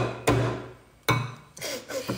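Three sharp knocks, each with a short ringing tail: two close together at the start and a third about a second in.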